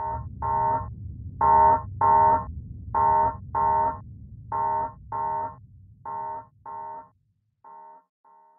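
A spaceship alarm sounding in pairs of short beeps, a pair about every one and a half seconds, loudest about two seconds in and then growing fainter. It plays over a low rumble that dies away about seven seconds in.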